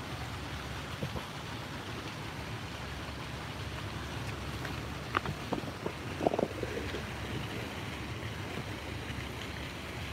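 Steady street ambience: a low rumble of traffic and wind on the microphone, with a few brief clicks around the middle.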